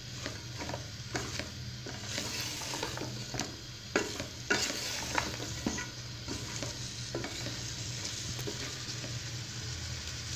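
Mixed vegetables sizzling in oil in a metal pot over a high flame while a spoon stirs and scrapes through them, with scattered knocks of the spoon against the pot, the sharpest about four seconds in.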